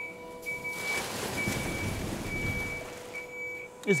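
Ice resurfacer's electronic warning beeper sounding a high, repeated beep, about one beep every 0.7 s, while its snow tank is tipped to dump. A rushing noise of shaved snow sliding out of the tank into the snow pit swells in the middle and fades.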